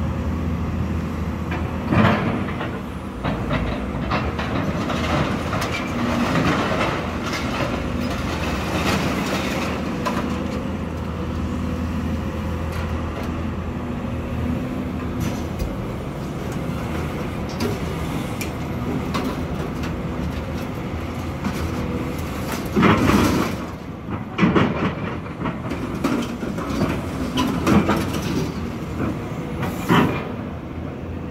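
Diesel engine of an excavator with a demolition grapple running steadily under load. Over it, demolition debris clatters and crashes as it is handled and dropped into a steel dump trailer: once about two seconds in, then several louder crashes in the last seven seconds.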